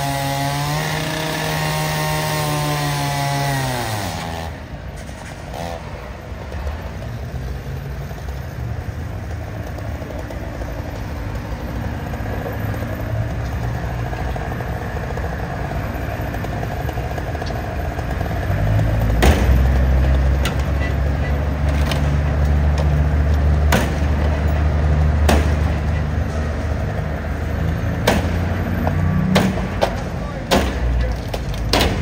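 Gas-powered cutoff saw cutting into a tractor-trailer's metal body, running at high speed for the first few seconds before its pitch drops away. In the second half there is a steady low engine drone with scattered sharp knocks and clatter.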